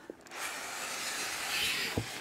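Styrofoam packing insert sliding out of a cardboard box: a steady rubbing scrape lasting about a second and a half, ending with a light click.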